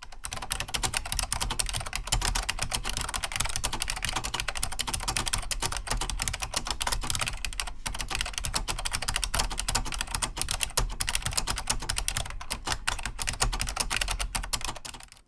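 Fast typing on a Chicony KB-5161C keyboard with amber Omron B3G-S clicky switches, an Alps-inspired design: a dense stream of sharp, very loud clicks, like frenzied staplers, with a brief pause about eight seconds in.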